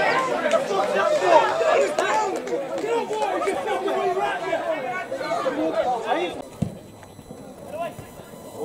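Many voices talking and calling at once, overlapping and indistinct, during a stoppage in a football match. They drop away about six seconds in, followed by a single dull thump.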